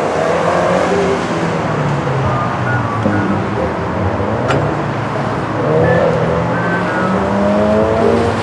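Scion FR-S's 2.0-litre flat-four boxer engine revving up and down as the car is driven hard through an autocross cone course, with a few short tire squeals.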